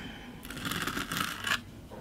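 Metal palette knife scraping glitter paste across a stencil on card, a rough scraping that lasts about a second.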